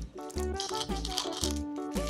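Background music with a steady beat, over a rattle of small sugar-coated chocolates tipping into a plastic egg capsule.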